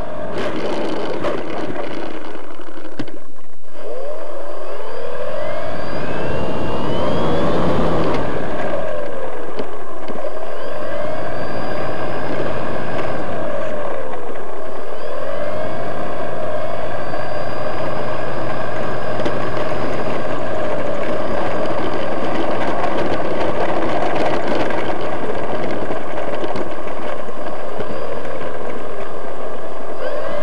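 Electric motor and propeller of a Fun Cub RC plane heard from its onboard camera: a loud whine that swings up and down in pitch again and again as the throttle is worked, with rushing air underneath.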